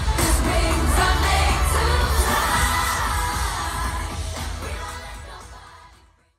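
Live pop concert through a stadium PA: female vocal group singing over a backing track with heavy bass, heard from among the crowd. The music fades out over the last couple of seconds.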